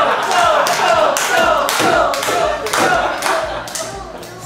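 A group of people chanting in rhythm while clapping, about two claps and chanted syllables a second, the diners urging the eater on.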